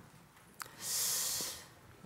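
A short breath drawn in close to a microphone, a high hiss lasting under a second in the middle of a pause, just after a faint click.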